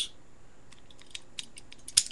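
Faint, light clicks of fingers handling a Holland ratchet compression tool and the compressed coax F connector in its chamber, with a sharper click at the very end.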